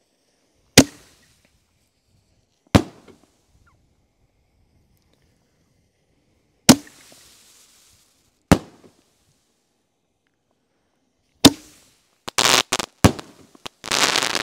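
Five-inch canister firework shells firing in sequence from a rack: five single sharp bangs a couple of seconds apart, then a rapid run of pops and crackles near the end as a mine-loaded shell goes off.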